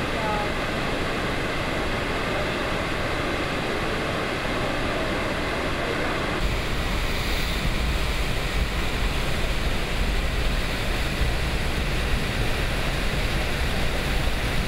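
Floodwater from Shihmen Dam's fully opened floodgates and spillway, rushing and crashing into the river in a loud, steady wash of noise. About six seconds in, the sound turns deeper and heavier.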